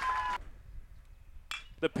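A play-by-play announcer's voice trails off. About a second of faint background follows, then a sudden burst of noise as he starts calling the next pitch.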